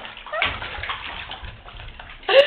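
Bathwater bubbling and sloshing in a tub, starting about half a second in, just after a short rising squeak of a voice.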